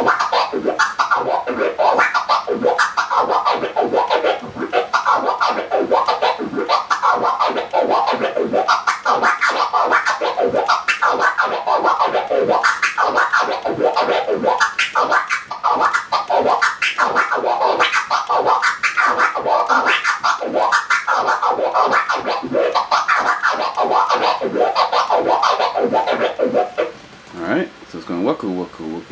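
Vinyl record scratched on a turntable: a fast, unbroken run of flare scratches, the record pushed forward and back while the mixer's crossfader clicks the sound out and in mid-stroke, giving a repeated "waku" sound. The strokes are accented to fall into a triplet feel. The scratching stops about a second before the end.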